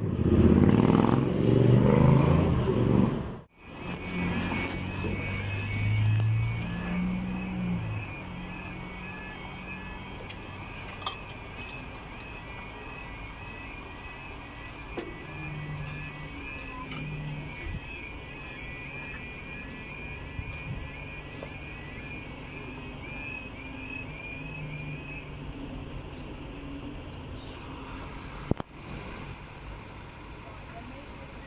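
A motorcycle and traffic pass close by at first. Then a UK level crossing's audible warning alarm sounds as a rapidly repeating warbling tone over idling road traffic, stopping about 25 seconds in.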